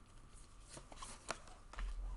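Faint handling of tarot cards: a few soft, separate clicks with a light rustle.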